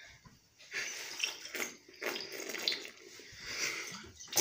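Water swirling in a glass bottle and being slurped from its mouth in uneven spurts, starting about a second in, as a vortex drink is tried and fails.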